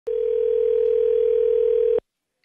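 Telephone ringback tone heard over the line while the call rings through. It is one steady, loud tone of about two seconds that cuts off suddenly.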